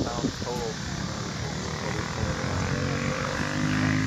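Go-kart engines droning from across the track, a faint steady hum whose pitch rises slowly in places and which grows a little louder near the end as the karts come around.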